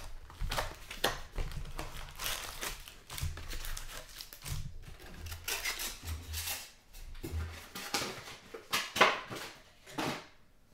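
Cardboard hobby box being opened and its foil trading-card packs pulled out and stacked: irregular crinkling and rustling of the pack wrappers and box, with a louder rustle near the end.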